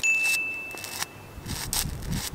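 A single high, bell-like chime sound effect rings out and fades away over about a second and a half, followed by a few faint clicks.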